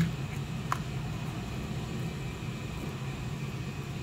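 Steady low background rumble, with one small click a little under a second in as the small LiPo battery and plastic chassis parts are handled.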